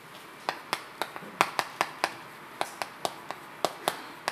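Chalk writing on a chalkboard: a dozen or so sharp, uneven taps as the chalk strikes the board with each stroke, starting about half a second in.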